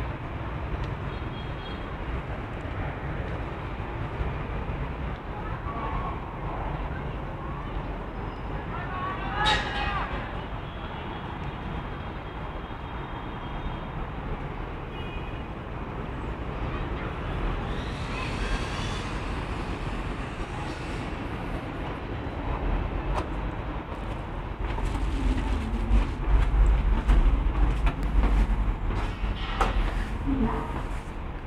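Steady hum of distant city traffic with faint voices of people around. There is a brief sharp sound about ten seconds in, and a louder stretch of low rumbling and bumps near the end.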